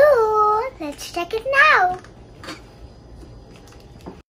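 A young girl's voice, drawn out and sing-song, for about the first two seconds, then quiet room tone.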